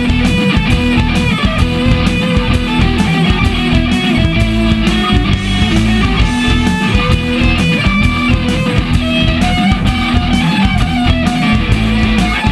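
Instrumental rock passage with no vocals: electric guitar playing a melody of held notes over bass and drums keeping a steady beat.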